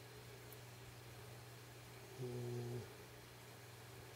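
A man's brief, low closed-mouth 'mm' hum, about half a second long, a little over two seconds in, over a faint steady electrical hum.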